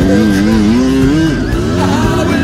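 Kawasaki KX100 two-stroke single-cylinder dirt bike engine revving up and down under changing throttle, with music playing over it.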